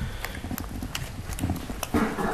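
A few light, sharp clicks and taps spread across a short pause, over a low room rumble, with a brief faint murmur of voices about one and a half seconds in.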